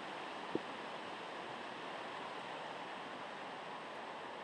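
Steady rush of a mountain stream running over rocks, with one short knock about half a second in.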